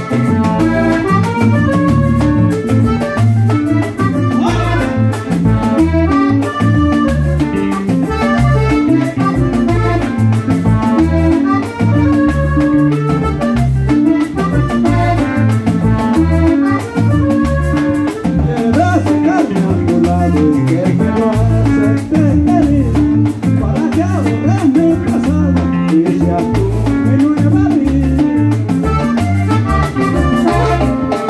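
Live Panamanian conjunto típico music played through a PA: a button accordion carries the melody over bass guitar and drums, with a steady dance beat.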